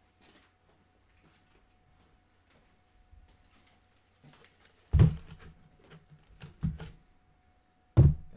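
Faint clicks and handling noises, then about five seconds in a loud thump followed by a few lighter knocks. These are the sounds of a box of tinfoil and a roll of masking tape being brought back and set down on a workbench.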